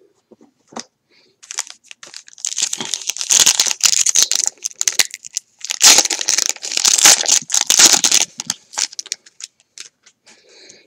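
A foil baseball card pack being crinkled and torn open close to the microphone, in two long bouts of dense crackling, from about two to four and a half seconds in and again from about six to eight seconds in.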